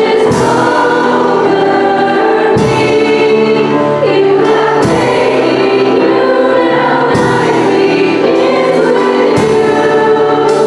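Young female voices singing a worship song together into microphones over musical accompaniment, with a fresh note or strum about every two seconds.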